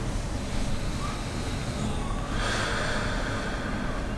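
A seated meditator's breathing, with a long breath through the nose about two and a half seconds in, over a steady low rumble.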